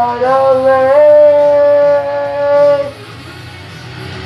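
A singer holding one long sung note over the song's backing track. The note slides in pitch, then holds steady and stops just under three seconds in, leaving the quieter backing music.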